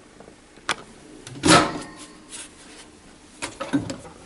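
Microwave oven door pulled open by its handle: a light click, then a louder clunk about a second and a half in as the latch lets go and the door swings open, followed by a few faint knocks near the end.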